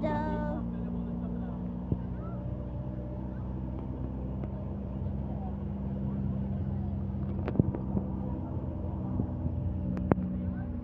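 A vehicle engine running as it drives along, a steady low drone throughout, with a couple of faint knocks.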